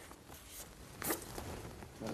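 Quiet room tone with one brief rasping rustle about a second in.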